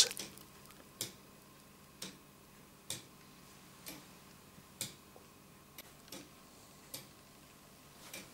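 Meccano foliot-and-verge clock escapement ticking, about one tick a second, as the spring-clip pallets on the verge catch the bolt teeth of the eleven-tooth escapement wheel; some ticks are louder than others.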